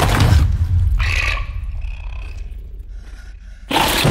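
Film-trailer sound effects: a deep rumble under two harsh bursts, one at the start and one about a second in with a screeching edge, each dying away, then a sudden loud hit just before the end as the title card comes up.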